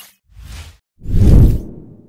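Two whoosh sound effects of a channel logo animation: a short, softer swish about a quarter second in, then a louder, longer whoosh about a second in that fades away.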